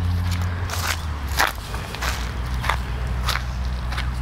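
Footsteps crunching through dry leaf litter and twigs, about one step every half second or so, over a steady low hum.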